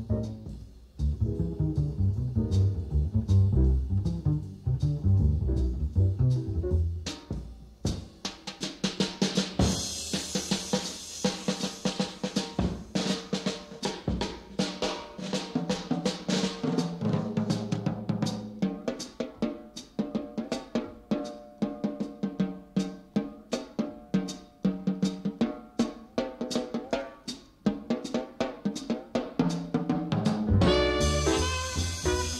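Jazz double bass solo ending about eight seconds in, followed by an unaccompanied swing drum solo. The drums begin with brushes, then switch to sticks, with one hand playing the tune's melody on a drum head while the other hand damps it, giving short pitched drum notes.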